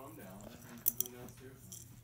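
Wordless voice sounds, with two sharp clicks close together about a second in as a plastic hot chocolate jar is handled.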